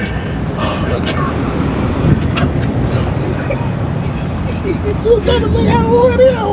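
Steady low rumble of a car idling, heard from inside the cabin while it waits at a drive-thru window, with voices talking over it near the end.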